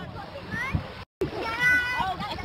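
A woman's high-pitched voice, laughing and squealing with rising pitch, with a short dead-silent break about a second in where the footage is cut.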